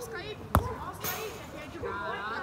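A football kicked hard once: a single sharp thud about half a second in, with players' voices around it.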